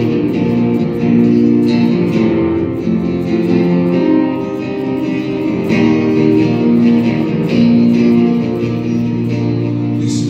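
Acoustic guitar strummed in a steady rhythm, ringing chords with no vocals.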